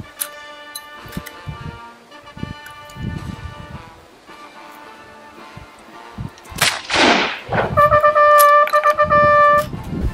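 A single black-powder Martini-Henry rifle shot (.577/450) about two-thirds of the way in, trailing off in a rolling echo. Background music with steady held notes runs throughout and is loudest near the end.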